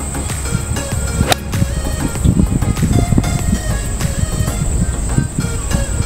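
A forged Wilson Staff FG Tour F5 8-iron striking a golf ball: one sharp click a little over a second in, heard over background music.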